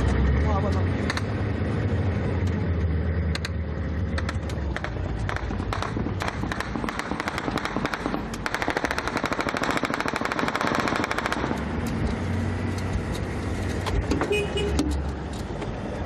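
Ride in a military vehicle: the engine rumbles and the cab rattles with scattered sharp knocks. From about eight to eleven seconds there is a dense, rapid run of sharp cracks, like a long burst of machine-gun fire.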